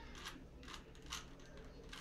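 Plastic Rubik's Cube layers being turned quickly by hand during a speed-solve, giving a few faint clicks and clacks.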